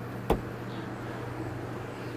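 A single sharp knock about a third of a second in, over a steady low hum.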